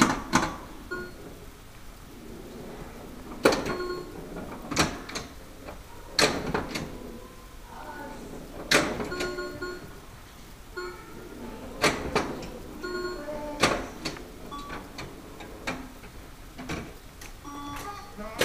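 Pinball machines in play: sharp mechanical clacks at irregular intervals of a second or two, mixed with short electronic beeps at several pitches.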